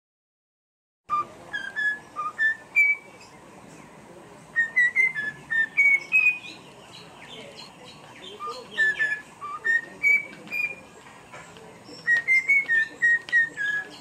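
A cockatiel whistling a string of clear notes that step up and down in pitch, in about four short phrases with pauses between them, starting about a second in.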